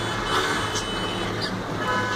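Steady low hum over a continuous background of noise.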